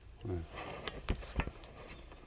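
A short spoken word, then a few light clicks and knocks of handling noise about a second in.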